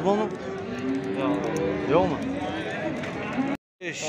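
Men's voices talking over one another in the general chatter of a crowded livestock market; the sound cuts out for a moment near the end.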